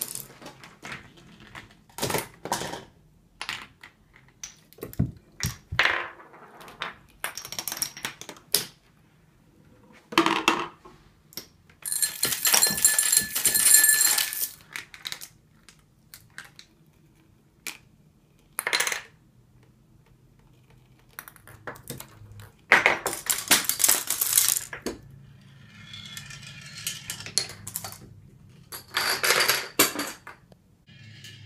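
A homemade chain-reaction machine running: balls rolling and dropping onto wooden and plastic track, wooden blocks and dominoes toppling, heard as a long series of separate clicks, knocks and clatters. The longest is a bright, jangling clatter of about two seconds near the middle, and another loud clatter follows later.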